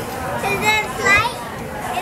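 A young girl's high-pitched voice making two short wordless vocal sounds, about half a second in and again about a second in, over steady background noise.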